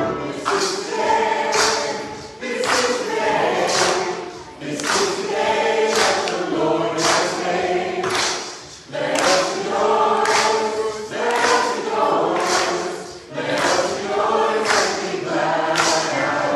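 Church choir singing a hymn, with crisp consonants about every second and short dips in level between phrases.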